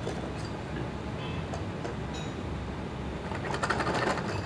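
Steady low background rumble, joined in the last half-second or so by a rapid, growing rattling clatter.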